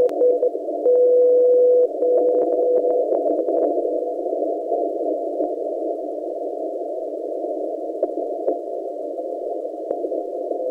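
Shortwave receiver audio through a narrow CW filter, tuned to the NCDXF beacon frequency on 20 m. A beacon's Morse callsign ends about half a second in. A steady one-second carrier tone follows, then fainter ones, as the beacon steps down in power, until only band hiss and static clicks are left.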